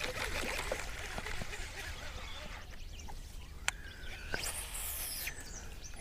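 Quiet outdoor background: a steady low rumble with faint bird calls, a single sharp click a little past halfway, and a short hiss soon after.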